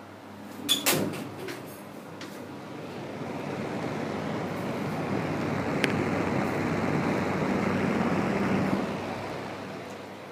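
Krisbow exhaust fan running: an even rushing air noise with a faint low hum that builds over several seconds, is strongest for the last few seconds, then eases off near the end. Two sharp clicks come about a second in.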